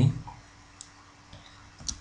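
A few faint, sharp computer-mouse clicks, about a second apart, against quiet room tone; a spoken word trails off at the very start.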